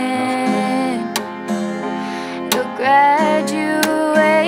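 A woman singing a slow song over a strummed Yamaha acoustic guitar. A held note gives way to a new sung phrase that rises in pitch about three seconds in.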